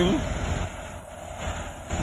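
A semi truck's diesel engine running with a low rumble as the tractor-trailer creeps along, its noise easing off about a second in.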